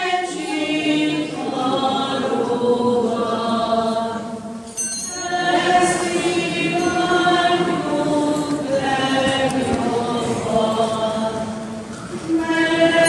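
A choir singing a hymn, several voices together in sustained sung lines, with a short break about four and a half seconds in before the next phrase.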